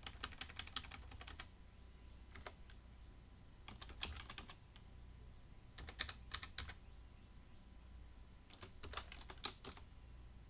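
Computer keyboard typing in several short bursts of keystrokes with pauses between them, as a formula is entered.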